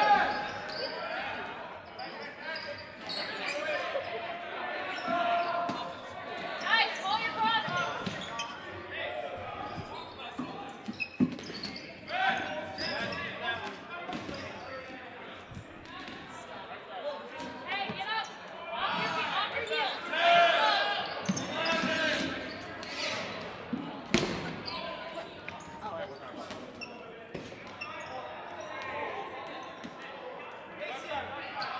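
Dodgeballs thudding on a hardwood gym floor and against players, with a sharp knock about 11 seconds in and another near 24 seconds, amid players shouting calls to each other, echoing in a large gym.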